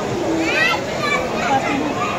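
Crowd babble: many people talking at once in a crowded hall, with high children's voices among them.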